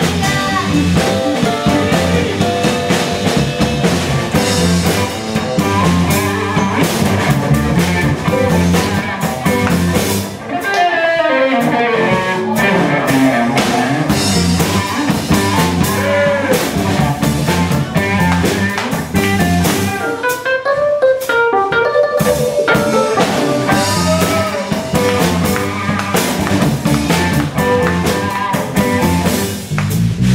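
Live soul-funk band playing: drum kit, electric bass and electric guitar.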